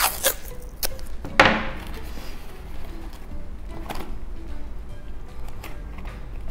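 Corrugated cardboard pieces and masking tape being handled and pressed together on a table: a few sharp taps and rustles, the loudest about one and a half seconds in. Quiet background music runs underneath.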